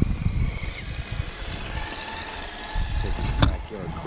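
Radio-controlled crawler truck's electric motor and gears whining faintly as it drives up a dry grassy slope towing a trailer, over a low rumble. A sharp click about three and a half seconds in.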